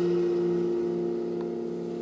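A held piano chord slowly dying away, its low note wavering in a slow, even beat.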